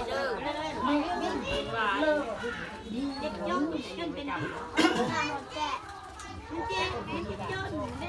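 Several people talking over one another at once, with children's voices among them, and one sharp knock about five seconds in.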